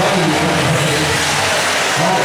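Nitro engines of 1/8-scale RC off-road buggies running and revving around the track: a steady, loud, wavering buzz.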